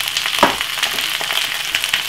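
Chopped cabbage and mixed vegetables frying in hot olive oil in a frying pan, with a steady hiss. A single knock comes about half a second in.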